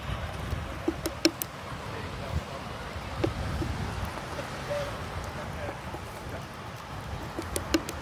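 Wind rumbling on the microphone, with a few sharp clicks and knocks: a cluster about a second in, one around three seconds in and more near the end.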